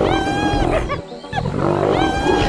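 Spotted hyenas giggling in a group: repeated arching, laugh-like calls with a short lull a little after a second in.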